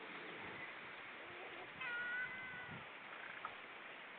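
A bird gives a short, high mewing call about two seconds in, its pitch falling slightly, over a steady hiss of wind and small waves washing on a pebble shore; a fainter call follows near the end.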